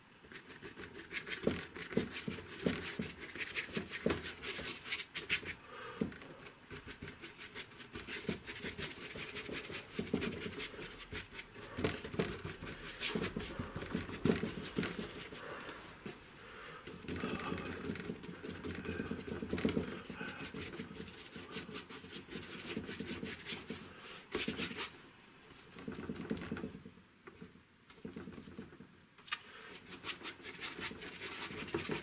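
A flat brush scrubbing oil paint onto a 3 mm MDF board in quick, irregular, scratchy strokes, with a short lull near the end.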